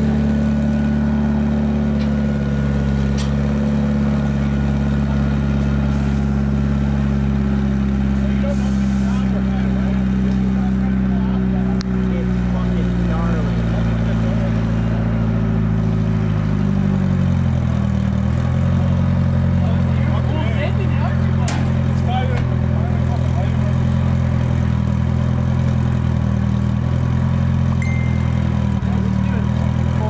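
A vehicle engine idling steadily close by, its pitch wavering and dipping briefly about two-thirds of the way through before settling again, with faint voices in the background.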